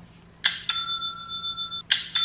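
Shopify order notification "ching" sound playing through a phone's speaker, repeating: one chime strikes about half a second in and rings on as a steady two-note tone, and the next strikes near the end.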